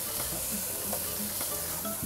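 Sausages sizzling on a barbecue grill, a steady hiss.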